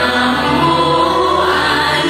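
Choir singing a Buddhist devotional song in long held notes over a low sustained accompaniment.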